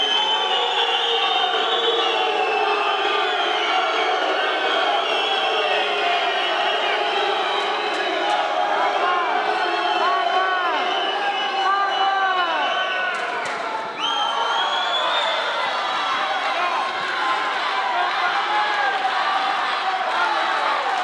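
Boxing arena crowd shouting and cheering, a loud, dense mass of overlapping voices that runs on without a break.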